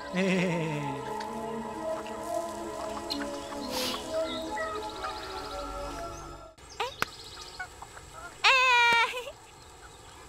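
A man's wavering laugh at the start, then soft background music with held notes; about eight and a half seconds in, a short, loud, high voice calls out once.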